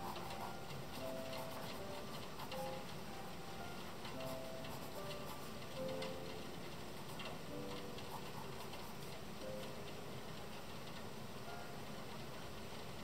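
Colored pencil scratching and tapping on sketchbook paper in short irregular strokes, under soft background music of sparse, separate held notes.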